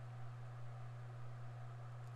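Faint background: a steady low hum under a light hiss, with no distinct events.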